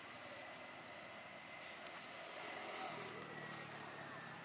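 Faint outdoor background of distant traffic, with a motor vehicle's engine hum rising about three seconds in.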